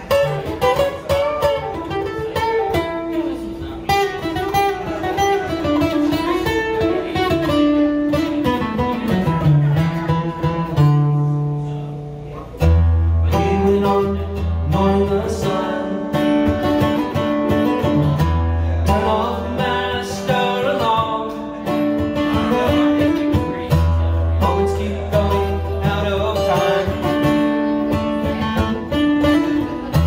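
Steel-string acoustic guitar played solo, picked and strummed, with a man's voice singing along at times. After a brief drop in level about twelve seconds in, deep bass notes come in and keep returning.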